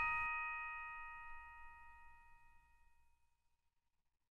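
The last bell-like chord of a Christmas song, played on mallet percussion, ringing on and fading out. It dies away to silence about three seconds in.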